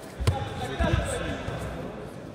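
Judo throw landing on the tatami: one sharp thud as the bodies hit the mat, followed about half a second later by a few dull thumps as the two fighters scramble on the ground.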